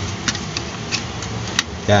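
A few faint clicks and taps from handling a ceiling fan's plastic motor housing during reassembly, over steady background noise.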